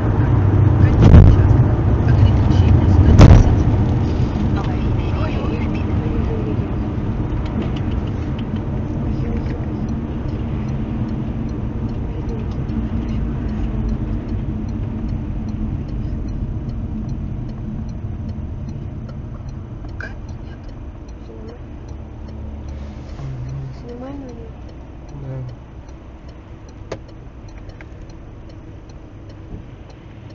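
Car driving along a wet highway heard from inside the cabin: steady engine hum and tyre noise that slowly fades. Two loud thumps come in the first few seconds.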